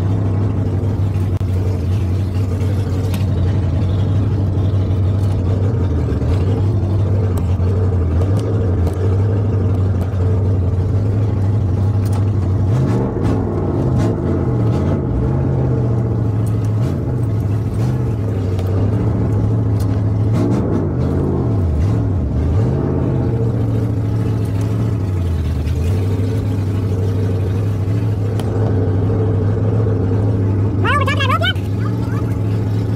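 An old Mercury pickup truck's engine running, heard from inside the cab. It is mostly a steady low idle. Through the middle stretch the engine speed rises and falls several times as the truck is driven slowly, turning around.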